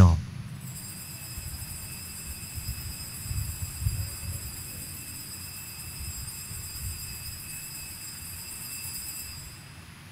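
Altar bells rung at the elevation of the consecrated host, a steady high ringing that starts just after the words of consecration and stops shortly before the end, over a faint low rumble of the church.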